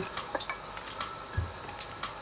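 Glass bottle handled while pouring on a workbench: a few faint clinks, then a soft thump about one and a half seconds in as the bottle is set down.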